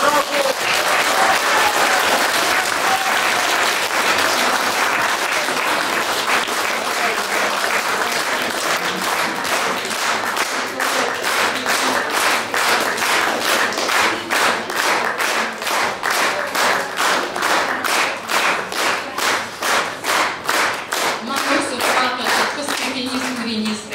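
Audience applauding at the end of a song: a dense round of applause that after about ten seconds settles into rhythmic clapping in unison, about two to three claps a second.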